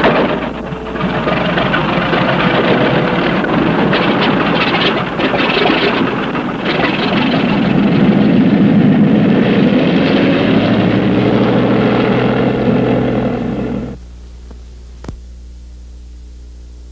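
Light aircraft engine running loudly, as for a takeoff; the sound stops abruptly about fourteen seconds in.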